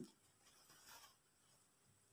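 Near silence: faint room tone, with one faint tick about a second in.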